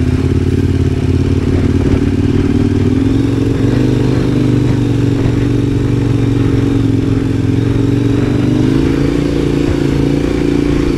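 KTM motorcycle engine running at a steady, moderate throttle, its pitch rising a little about three seconds in and again near the end.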